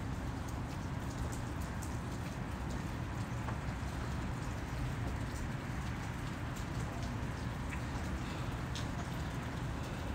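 Steady trickling and splashing of circulating water in a saltwater reef aquarium, over a low hum, with faint scattered ticks.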